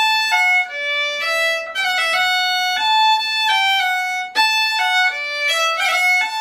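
Solo fiddle playing a bowed jig melody, one note after another, with a quick four-note half-roll grace-note ornament played at the start of a note.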